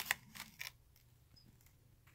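A few soft clicks of paper and card being handled in the opening moment, then quiet room tone.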